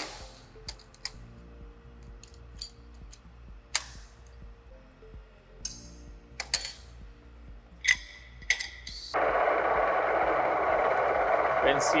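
Scattered metallic clicks and knocks as steel plates and clamps in a welding fixture are handled, over a faint low machine hum. About nine seconds in, the friction stir welding machine starts up with a sudden, loud, steady mechanical running noise that carries on.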